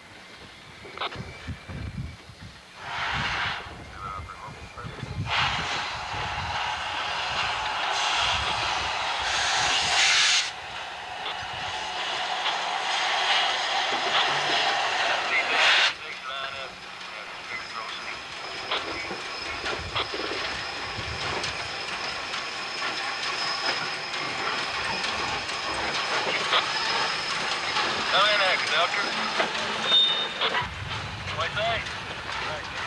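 Norfolk & Western class J 4-8-4 steam locomotive 611 running at speed, heard mostly as loud steam hissing and exhaust noise. The noise swells in long stretches and cuts off abruptly about halfway through, then carries on more steadily.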